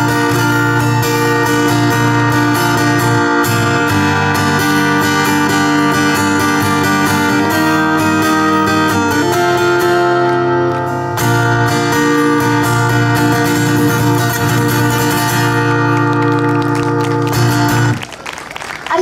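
Acoustic guitar strummed in an instrumental passage without singing, chords ringing steadily with a chord change about halfway through.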